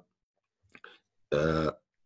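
A man's voice: faint mouth clicks, then one short voiced sound of about half a second, a little past the middle, in a pause between his sentences.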